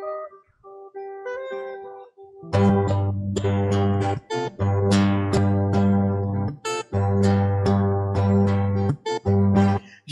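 Acoustic guitars playing an instrumental break between sung verses. Sparse single plucked notes come first, then from about two and a half seconds in, fuller strummed chords with bass notes, with a few brief breaks.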